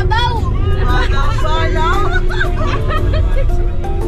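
A song with a singing voice, over the steady low rumble of a van on the road.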